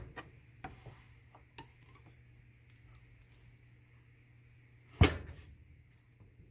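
Soap loaf being handled on a wire soap cutter: a few light clicks and taps in the first couple of seconds, then one loud knock about five seconds in.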